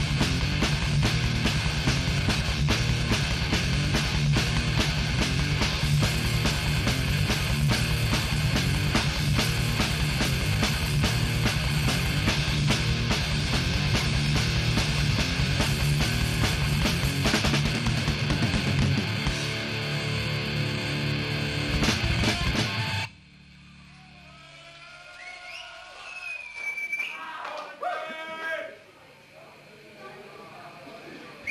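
Death metal band playing live at full volume, distorted electric guitars, bass and pounding drums, with a run of evenly spaced drum hits near the end of the song before the music stops abruptly about three quarters of the way through. After that, scattered audience whistles and shouts.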